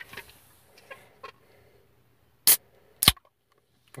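Aluminium can of G Fuel energy drink being handled and cracked open: faint rustling and clicks, then two sharp pops about half a second apart near the end as the tab breaks the seal.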